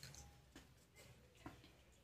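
Near silence: room tone with a low hum and a few faint ticks.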